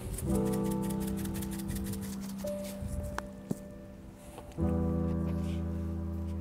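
Background music of slow, held piano-like chords that fade away, with a new louder chord struck about four and a half seconds in. Under the first chord, a pepper mill being twisted gives a rapid faint clicking for about two seconds.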